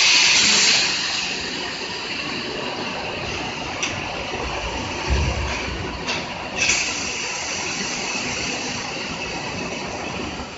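Foundry mold conveying line running with a high, steady hiss. The hiss is loud for the first second, then drops to a quieter level, with a few sharp clicks and a low thump about five seconds in.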